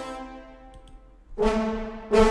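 Sampled orchestral brass ensemble, Native Instruments' Brass Ensemble library in Kontakt, playing: a held chord fades out over the first second, then a new chord comes in about a second and a half in.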